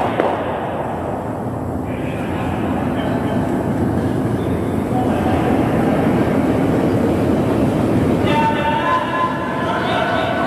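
Curling stones running over pebbled ice with a steady low rumble that builds through the middle. Near the end a player's voice calls out as the brooms go to work.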